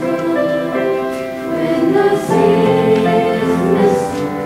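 A middle-school mixed choir singing a folk melody, several voices holding notes in harmony. The singing swells louder about two seconds in.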